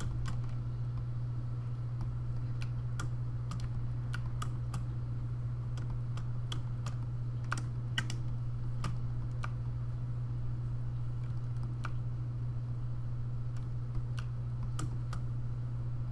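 Scattered, irregular clicks of a computer keyboard and mouse, about one or two a second, over a steady low hum.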